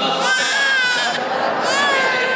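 Infant crying in long, high-pitched wails: two cries with a short catch of breath between them.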